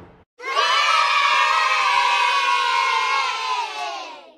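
Sound-effect cheer from a crowd of children: one long shout of many voices together, starting about half a second in and fading out near the end, marking the giveaway winner's reveal after a drum roll.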